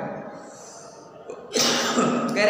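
After a quiet pause, a man sneezes once near the end: a short, sudden, loud burst of breath.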